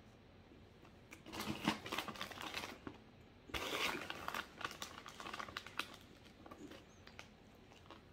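Crinkling of a plastic Cheez Doodles snack bag being handled, in two bursts of about a second and a half and two seconds, followed by a few fainter crackles.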